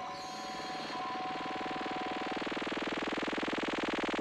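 Distorted synthesizer music with a fast buzzing pulse, slowly growing louder; two held high tones over it fade out about halfway through.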